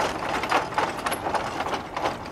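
Horse-powered treadmill running under two walking horses, its slatted tread and drive gearing clattering with a steady stream of irregular clicks and knocks.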